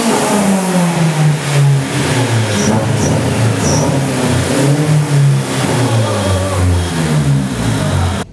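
Honda S2000's four-cylinder engine running at varying revs, its pitch falling, rising and falling again. This is the loud engine run during which the loose fuel rail, its bolts backed off from stacked injector spacers, sprayed fuel.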